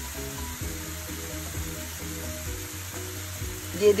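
Pineapple chunks, onion and bell pepper sizzling in oil in a stainless steel frying pan as sliced onion is dropped in, with soft background music.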